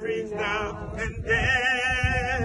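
A man singing a gospel hymn in long held notes with a wide vibrato, pausing briefly for breath about a second in.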